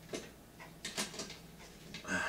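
A few faint clicks and light knocks, about a second in, from a cut-in eyeball can light fixture being handled and pushed up into a sheetrock ceiling hole.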